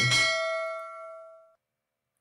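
A single bell-like ding sound effect, of the kind laid under a subscribe-button animation, rings out and fades away over about a second and a half. Then the sound track drops to dead silence.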